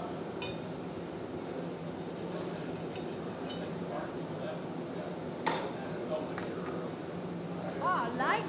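Steady noise of a glassblowing hot shop's furnaces and reheating chamber, with a few sharp metallic clinks, the strongest about five and a half seconds in, as the blowpipe turns on the steel bench rails.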